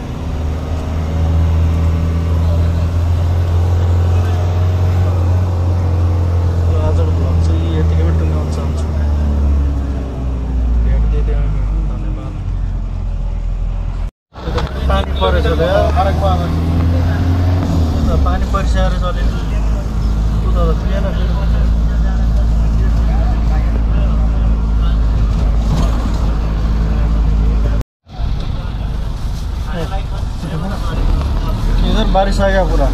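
Engine and road noise inside a moving bus, a steady low drone, with voices over it. The sound cuts out briefly twice, about halfway through and near the end.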